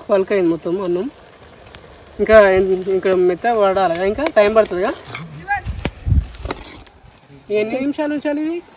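A person's voice speaking in three stretches, about a second at the start, a longer run from two to nearly five seconds in, and again just before the end. The quieter gaps hold faint clicks and a brief low rumble about six seconds in.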